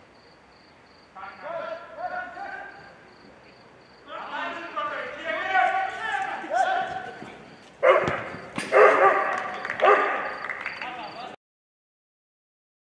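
Loud, wordless shouting and calling from players during a five-a-side football match, in several bursts, with a sharp thump of a kicked ball about eight seconds in.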